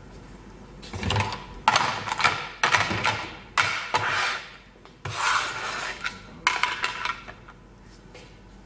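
Stacked clear plastic food-container lids with green seal rims being handled and slid against each other and across a wooden tabletop. There are several rubbing, scraping strokes from about a second in until near the end.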